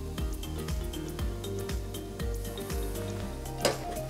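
Background music with a steady beat, over the faint fizz of soda water being poured onto ice in a highball glass. A short knock near the end as the glass soda bottle is set down on the bar.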